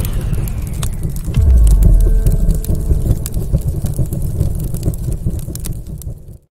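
Explosion sound effect from an intro: a deep boom about one and a half seconds in, then a long rumbling tail with crackles that fades out near the end.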